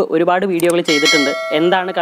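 A short bell-like chime sound effect of the kind that goes with a subscribe-and-notification-bell animation. It rings out about a second in and fades after about half a second, over a man's continuing speech.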